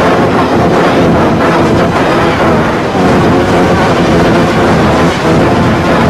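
Loud, steady wall of harsh distorted noise with faint held tones running through it.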